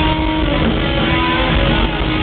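Hard rock band playing live in an arena: loud electric guitars over drums and bass, heard from the crowd.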